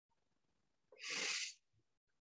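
A person's single audible breath, about half a second long, starting about a second in; the rest is near silence.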